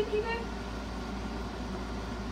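A steady low background hum fills the room. A brief, short voice sound comes right at the start.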